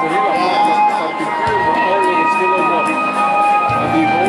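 Live band music with a Telecaster-style electric guitar playing, over long held notes.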